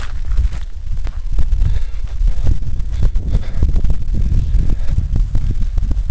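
Wind buffeting the camera microphone in a loud, uneven low rumble, mixed with scattered knocks and footsteps as the camera is carried while walking over wet ground.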